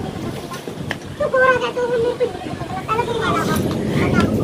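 A person's voice, speaking or calling briefly twice, over a steady rush of wind on the microphone.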